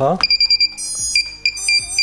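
Rapid series of short, high-pitched electronic beeps at one steady pitch from the iFlight Protek 25 quadcopter's electronics, sounding just after its battery pack is plugged in: the power-up beeps of the freshly connected quad.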